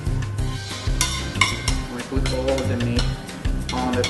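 Metal fork scraping and stirring pasta out of a metal pan onto a plate in several quick scrapes, over background music with a steady beat.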